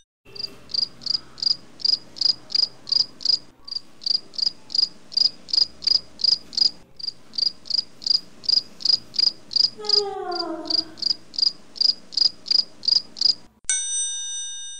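Crickets chirping in an even rhythm, about three chirps a second. A short falling pitched sound comes about ten seconds in, and a bell-like chime sounds right at the end.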